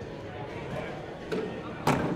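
A cornhole bag landing on the wooden board with a sharp thud near the end, after a fainter knock a moment before, over low background voices.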